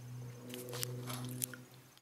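Faint handling noises, a few light clicks and rustles, over a steady low hum.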